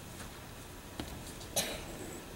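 A single short cough about one and a half seconds in, preceded by a soft click about a second in, over quiet room tone.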